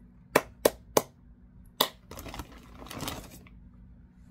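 Handling noise as a skein of yarn is picked up: three quick sharp clicks about a third of a second apart, another click a second later, then a soft rustle.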